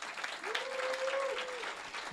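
Audience applauding in a banquet hall, with one voice held for about a second among the clapping.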